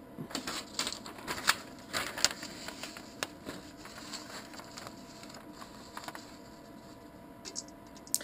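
Scattered light clicks, taps and paper rustles from hands working at a small 3D printer's print bed while a sheet of paper is slid under the nozzle for bed leveling. The clicks come thickly for the first few seconds, then only now and then.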